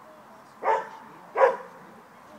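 A dog barks twice, two short loud barks about two-thirds of a second apart.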